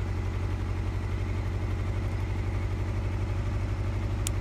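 Honda CBR600 sport bike's inline-four engine idling steadily with an even low pulse.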